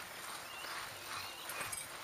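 Mountain bike riding over a dry, rough dirt singletrack: tyre noise on the dirt and rattling of the bike in a loose, repeated rhythm of soft pulses.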